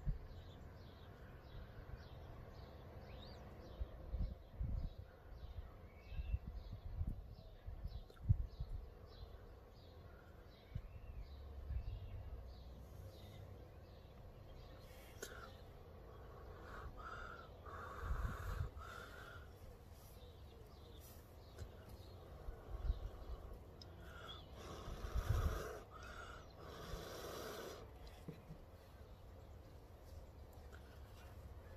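A person blowing in long, airy puffs on smouldering ash-soaked cotton tinder to nurse the ember, in two spells in the second half. Earlier, a small bird chirps over and over, about twice a second.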